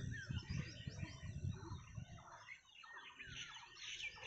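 Birds chirping and calling: many short, quick chirps, faint.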